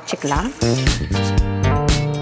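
A voice trails off, and about half a second in, background music with plucked guitar and bass comes in and carries on.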